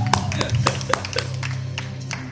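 A few sharp hand claps, mostly in the first second and a half, over the instrumental backing of a pop ballad with a steady low bass.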